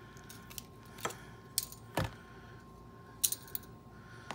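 Light metallic clicks and jingles of an HK 33/93 magazine's follower and coil springs being pried and slid free with a bayonet tip: a handful of separate clicks, the loudest about two seconds in.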